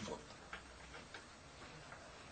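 Quiet room tone in a pause between speech, with two faint ticks, about half a second and a second in.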